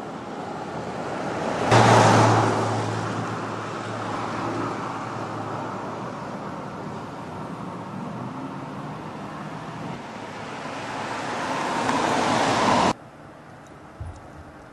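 Road traffic: a vehicle goes by, loudest about two seconds in, with a low steady hum under the road noise. The noise swells again and cuts off abruptly near the end.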